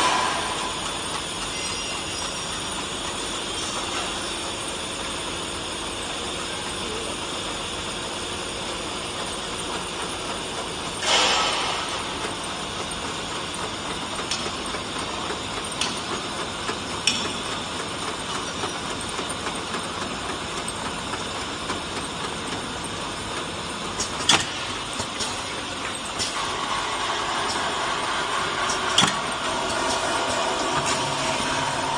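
Automatic 20L bottle filling and capping line running: a steady mechanical hum from conveyors and machinery, with a few sharp clicks and knocks and a short burst of hiss about eleven seconds in.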